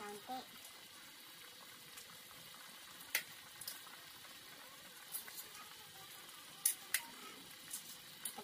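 Metal spoon stirring a pot of pork afritada stew simmering in tomato sauce, giving a few sharp clinks against the metal pot, the loudest about three seconds in and two in quick succession near the end, over a quiet, steady bubbling.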